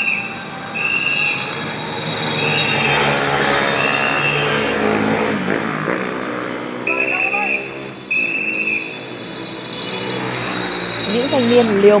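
A whistle blown in short shrill blasts, about one a second, pausing midway and then sounding twice more, over motorbike engines revving with rising and falling pitch.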